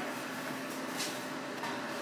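Quiet room tone with a steady low hum and a faint click about a second in.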